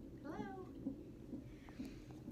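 A brief, high, sing-song "hello" in a woman's voice, rising then falling in pitch, followed by faint room tone.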